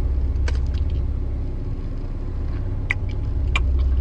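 Steady low rumble of a car idling, heard inside the cabin. A few short crisp clicks of chewing a Pop-Tart come over it.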